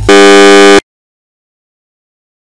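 A very loud, harsh buzzer tone that holds one steady pitch for under a second and then cuts off abruptly.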